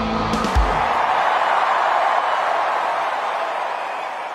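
A deep thump about half a second in, then a steady rushing noise that slowly fades.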